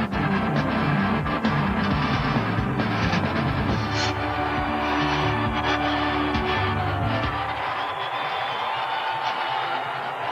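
Television news opening theme music with a driving, repeating bass beat. About three-quarters of the way through the beat and bass drop out, leaving higher held notes that slowly get quieter.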